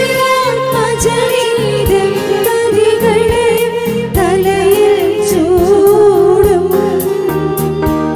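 Live Malayalam Christian wedding hymn: women singing into microphones over an amplified band with sustained chords and a steady drumbeat.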